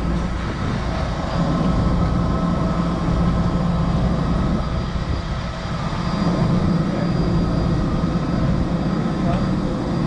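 Aircraft engines running on an airport apron: a steady low rumble with a constant high-pitched whine over it.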